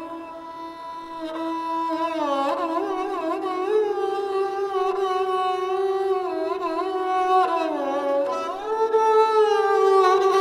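Sarangi played with a bow: a single melodic line that slides and bends between notes with quick ornaments, the pitch dipping and then climbing again near the end.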